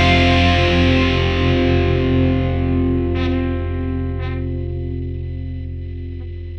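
Music: a distorted electric guitar chord ringing out and slowly fading, with two faint light strokes about three and four seconds in.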